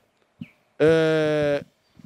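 A man's voice holding one drawn-out vowel at a steady pitch for under a second, a hesitation sound in a pause between phrases.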